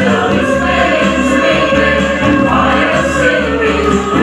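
A mixed community choir of men's and women's voices singing into stage microphones, holding long notes that glide between pitches.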